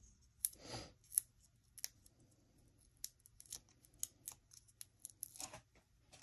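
Stampin' Up! dimensionals (foam adhesive dots) being peeled off their backing and pressed onto a die-cut paper whale: a run of faint, sharp ticks and crackles, with a longer rustle just under a second in and another near the end.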